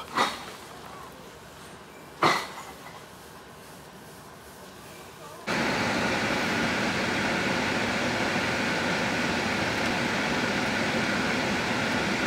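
Quiet indoor background with two short vocal sounds. About five and a half seconds in, a cut brings in steady car-cabin noise, an even hiss and rumble from the moving or idling car.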